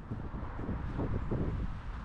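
Wind noise on the microphone, a steady low rumble over faint outdoor ambience.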